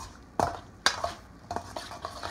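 Tongs clinking and scraping against a stainless steel mixing bowl while tossing roasted Brussels sprouts and diced apples in dressing, with three or four sharp clinks about half a second apart.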